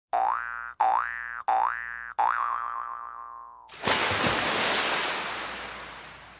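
Cartoon boing sound effects on an outro title card: four in a row, each a quick upward pitch glide, the last one longer and wavering. Near the middle a loud whoosh of noise swells in and slowly fades away.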